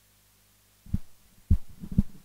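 Handheld microphone being handled and lowered, giving three dull low thumps in the second half over a faint low hum.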